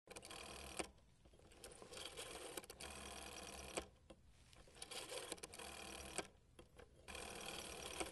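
A rotary telephone's bell ringing faintly in repeated bursts of about a second each, with short pauses between the rings.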